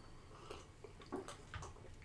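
Faint sipping and swallowing as people drink beer from glasses, with a few small wet clicks.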